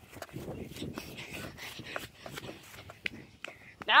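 Footsteps and rustling from someone walking across a grass lawn onto asphalt with a handheld camera, in a string of irregular soft clicks.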